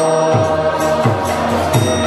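Kirtan music: voices chanting a mantra over sustained held tones, with a low beat whose pitch falls, about every 0.7 s, and bright metallic strokes keeping time.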